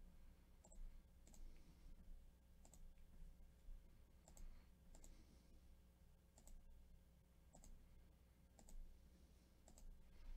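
Faint computer mouse clicks, one every second or so, as a web page's randomize button is clicked again and again, over a low steady hum.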